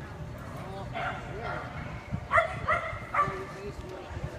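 A dog barking three times in quick succession, sharp and high-pitched, a little over two seconds in.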